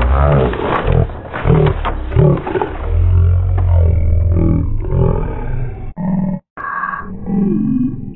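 Cartoon soundtrack slowed to quarter speed, so its voices and effects come out deep and drawn out. The sound breaks off briefly about six seconds in and again near the end.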